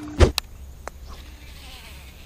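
A fly or bee buzzes close by in one steady hum, which cuts off about a quarter second in at a loud thump. Two faint clicks follow.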